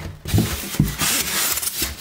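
A rigid foam insulation board is pushed up off an attic hatch opening and slid across the wooden framing: a rubbing, scraping hiss with a few small knocks, strongest about halfway through.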